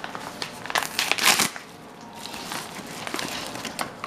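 Paper and plastic packaging crinkled and torn open by hand, as irregular rustles that are loudest about one to one and a half seconds in, then lighter and scattered.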